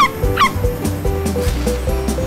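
A cartoon dog gives two short barks near the start, over background music.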